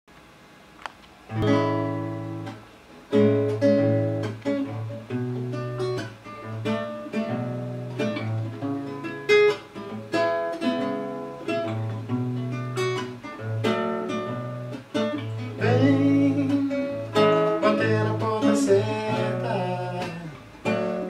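Nylon-string classical guitar played fingerstyle: a solo instrumental intro of plucked chords over a steady bass line, starting a little over a second in.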